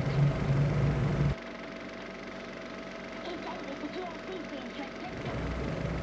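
Steady low hum of a Philips DP70 projector running, cut off abruptly about a second in, leaving a much fainter bed with a thin steady tone until the hum returns near the end.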